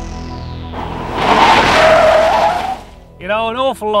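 TV segment intro sting: music with a high falling sweep, then a loud rushing burst about a second in that lasts about two seconds. A man's voice starts speaking near the end.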